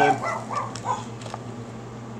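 A dog barking three short times in quick succession, with a couple of faint clicks.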